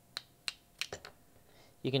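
Two hard-plastic CNC hold-down blocks knocked together: four sharp clicks within the first second. The crisp click is the sign of a hard plastic.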